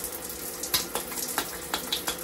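Hot water running over and through a lotion pump as it is rinsed, a steady splashing hiss, with a few sharp clicks and spatters in the second half.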